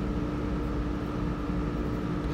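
Steady machinery hum with a constant low tone and a fainter higher one, even in level throughout.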